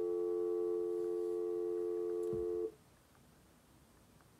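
Steady electronic test-pattern tone accompanying colour bars, several pitches sounding together, held for about two and a half seconds and then cut off suddenly, leaving faint room tone.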